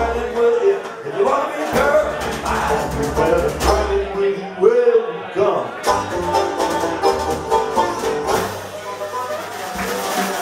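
Live band playing a country-style tune on banjo, upright bass and drums.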